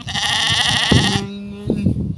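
A sheep bleating: one loud, quavering call lasting a little over a second, followed by a lower, shorter call.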